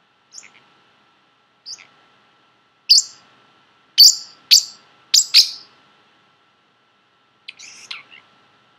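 Pacific parrotlet chirping in short, sharp, high calls: two faint ones early, then a quick run of five loud ones in the middle, and a couple more near the end.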